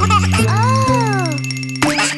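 Cartoon background music with a comic sound effect: a tone that arches up and falls back in pitch, then a quick rising sweep near the end.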